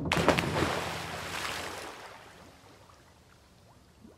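Sound effect of a person jumping off a diving board into a swimming pool: a loud splash at the start, then water sloshing and fading away over about three seconds.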